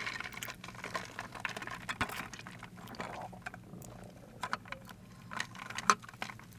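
Faint scattered clicks and small liquid sounds of a drink in a plastic tumbler being handled and sipped through a straw, with a few louder clicks near the end.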